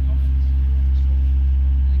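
A steady, loud, low mechanical drone that holds an even pitch throughout.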